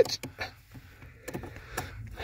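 Faint, scattered small clicks and rustling from a hand handling a brake light switch and its plastic wiring connector at the brake pedal bracket.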